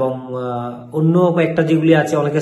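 A man's voice: one held, drawn-out vowel at a steady pitch for about the first second, then running speech.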